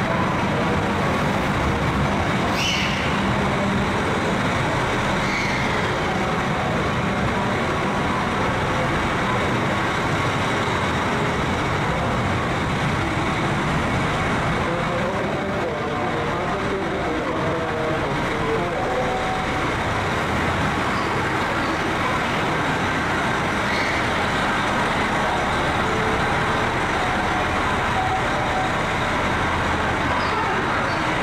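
KiHa 261 series diesel train's engines running as it rolls into the platform and slows to a stop, a steady loud din.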